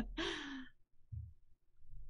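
A person's breathy sigh, the voice falling slightly in pitch, as laughter trails off in the first second, followed by a faint low thump.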